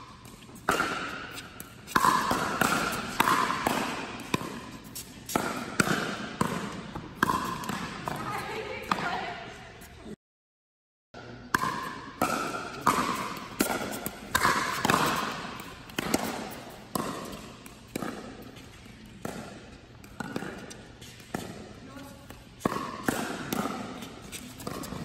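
Pickleball rallies: paddles striking a hard plastic pickleball in sharp pops, about one a second, each ringing on briefly in a large indoor hall. A second of silence about ten seconds in breaks the run before the hits resume.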